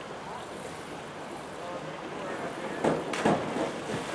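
A diver entering the pool from a 1-metre springboard: a short, loud splash of water about three seconds in, over a steady outdoor hiss.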